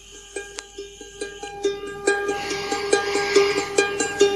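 Instrumental music on a plucked string instrument: repeated picked notes in a steady rhythm, growing louder, with a fuller sound filling in about two seconds in. It is the musical intro to a recorded poem reading.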